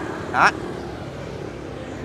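A single spoken word, then steady, even outdoor background noise with no distinct events.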